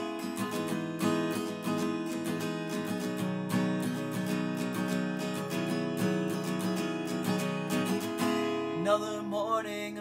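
Acoustic guitar strummed in a steady rhythm, playing a song's introduction. A man's voice begins singing about a second before the end.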